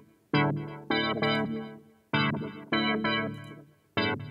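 Synthesized UK garage chord stabs from an Xfer Serum patch, played in a syncopated rhythm of about six short chords, each starting sharply and dying away within half a second or so.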